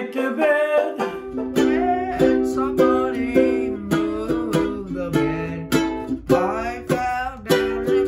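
A banjo ukulele strumming chords in C, giving way about a second in to a baritone ukulele, capoed at the 5th fret, strummed in a steady rhythm with a boy singing over it.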